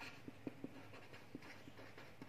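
Faint sound of a pen writing on lined paper, with a few soft ticks from the pen tip as the strokes are made.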